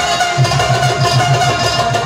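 Instrumental ensemble music: a rubab being strummed and plucked over tabla and harmonium. Low tabla strokes run at about five a second under a steadily held harmonium note.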